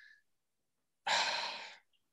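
A man sighing: one audible breath out about a second in, lasting under a second and fading away.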